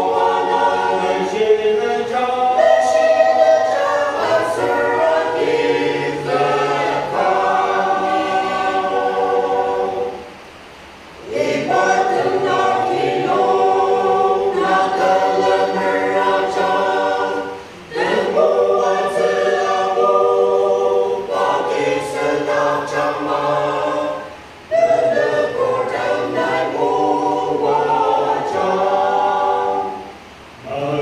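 Mixed church choir of men and women singing a hymn in several parts, in long held phrases with short breaks between them about 11, 18 and 24 seconds in.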